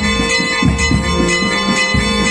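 Church bells ringing steadily, their tones hanging on and overlapping, with strokes about every half to two-thirds of a second. A slow low melody runs beneath them.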